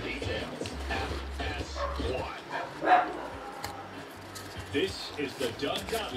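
A dog barking a few short times in the background, the loudest bark about three seconds in, over faint radio talk and music.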